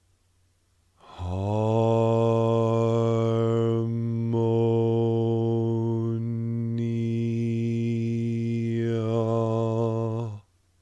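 A man's low voice intoning the word "harmonia" as one long held note on a single pitch, the vowel sound shifting slowly from syllable to syllable. It starts about a second in and is held for about nine seconds.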